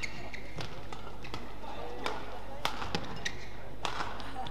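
Badminton rackets striking the shuttlecock in a fast doubles rally, sharp hits coming about every half second and loudest in the second half, with short shoe squeaks on the court mat.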